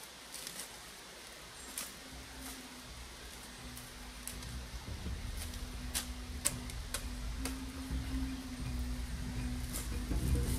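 Scattered faint crackles and creaks of dry reed thatch and a wooden ladder under a climbing person. Background music fades in about two seconds in, with a low held note that grows louder towards the end.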